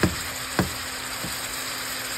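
Curry sauce with snow crab pieces simmering hard in a skillet, a steady bubbling sizzle as the coconut-milk liquid cooks down. A single short knock about half a second in.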